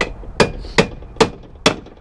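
Hammer striking steel on a Nissan 240SX's suspension during teardown: five hard blows, evenly spaced about 0.4 s apart, each with a short metallic ring.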